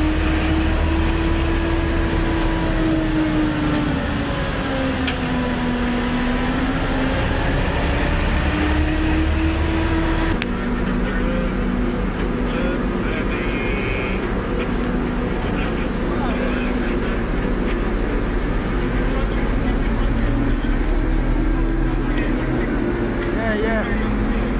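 A tug's engine running steadily under the bow, its note slowly rising and falling as the throttle is worked. About ten seconds in the note drops and settles lower as the boat eases in on the buoy.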